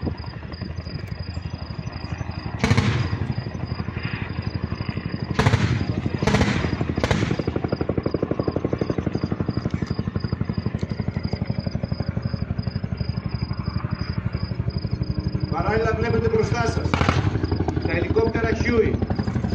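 Helicopter rotor chopping with a steady rhythm. Four loud bangs with echoing tails come through about 3, 5½, 6 and 7 seconds in, as in live-fire explosions.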